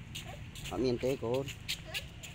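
A person's voice speaking two short phrases.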